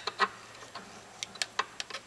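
A metal pump oil can being handled, giving about seven light, irregular clicks and taps.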